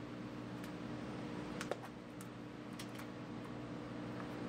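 A handful of light, scattered clicks and taps from a metal mint tin being opened and plastic cuvettes being handled, over a steady low room hum.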